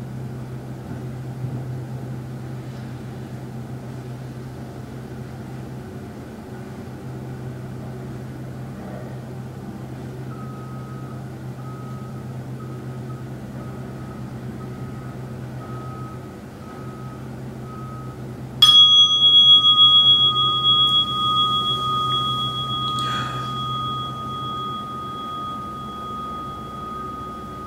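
A bowl-shaped meditation bell struck once, about two-thirds of the way in, closing the sitting. It rings on with a clear, slowly fading tone. Before the strike there is a steady low room hum and a faint pulsing tone at the bell's pitch.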